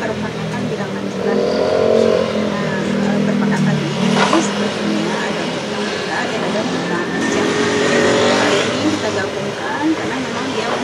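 A motor vehicle engine running steadily, with a person's voice over it.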